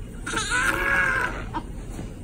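Premature newborn baby, at about 36 weeks, letting out a single short high-pitched cry that rises and then falls in pitch, lasting about a second.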